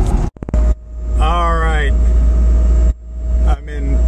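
In-cabin driving noise of a Porsche 914 electric conversion moving slowly: a steady low road and wind rumble with a thin steady whine. There is a brief dropout with clicks near the start.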